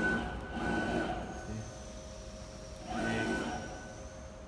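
Stepper motors of a CNC router driving its axes, with two short whining moves, one at the start and one about three seconds in, over a steady machine hum.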